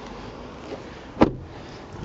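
A Hyundai i30's car door shutting with a single short clunk about a second in, over a faint steady background.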